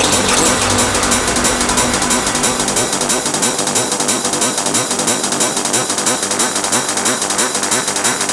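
Hardcore gabber music: a dense, fast, evenly repeating pattern. A low bass tone drops out about two seconds in, leaving the rest without a low end, as in a breakdown.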